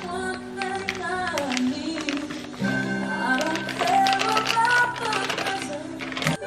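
Background music: a song with a singing voice over held chords, with the chords changing about two and a half seconds in.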